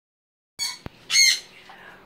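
A parrot squawking: a short call about half a second in, a sharp click, then a louder squawk just after a second.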